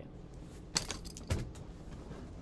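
Two short clattering knocks about half a second apart, over faint room noise, as a person gets up from a leather office chair and moves away.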